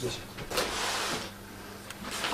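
A short sliding, rustling scrape lasting under a second, starting about half a second in, as things are handled during a search of an office.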